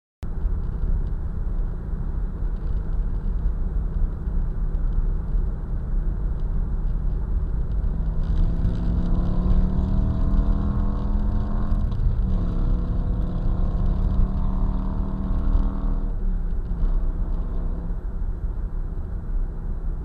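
Car driving, heard from inside the cabin: a steady low engine and road rumble. About midway the engine note climbs slowly in pitch, falls back, then climbs and falls back once more.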